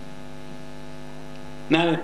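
Steady electrical mains hum in the sound system, a set of low steady tones at an even level through a pause in speech. A man's voice comes in near the end.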